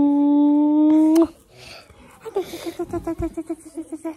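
A long, steady hummed 'mmm' that rises slightly in pitch and ends in a smacking kiss just over a second in. After a short pause comes a quick run of short voice pulses, about seven a second, that lasts to the end.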